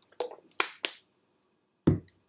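Three short, sharp clicks in the first second, then a louder, lower thump near the end, close to the microphone.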